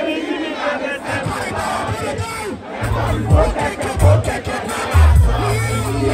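Packed party crowd shouting and cheering over loud music, with heavy bass notes cutting in and out from about halfway through.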